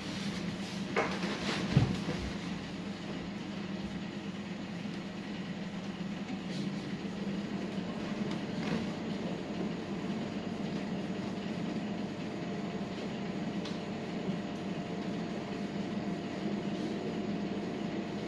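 Steady low hum of room background noise, with a single thump about two seconds in.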